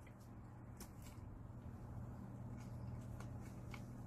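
Faint chewing of a mouthful of paan (betel leaf wrapped around sweet fillings): soft, scattered crunchy clicks over a steady low hum.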